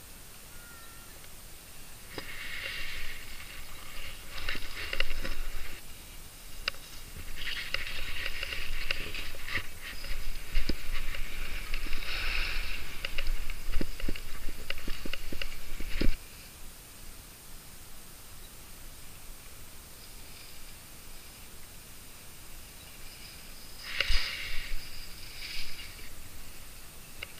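Skis scraping and hissing over packed, chopped-up piste snow through a run of turns, with scattered clicks. The scraping comes in bursts from about two seconds in, stops suddenly about two-thirds of the way through, and returns briefly near the end.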